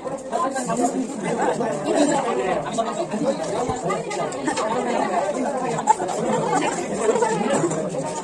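Overlapping chatter of several voices talking at once, with no single speaker standing out.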